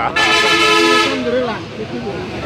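A vehicle horn sounding once, a steady blare of about a second, with voices talking under it and after it.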